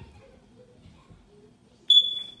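Faint room noise, then near the end a sudden single high-pitched electronic beep that fades away over about half a second.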